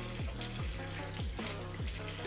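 Kitchen tap running into a stainless steel sink, water splashing over a wire whisk being washed, with background music and its low, regular beat under it.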